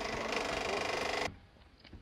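Steady mechanical whirring noise that cuts off abruptly just over a second in, leaving near quiet.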